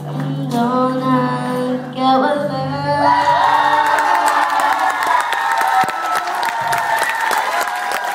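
A young female singer holds the closing notes of a song over sustained backing music. About three seconds in, the audience breaks into applause and cheering.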